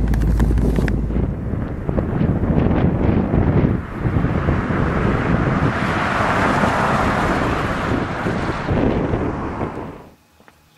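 Wind buffeting the microphone in an open convertible, then a 1959 Ford Fairlane 500 Galaxie Skyliner with its 332 V8 driving past. Its engine and tyre noise swells about six seconds in and fades away.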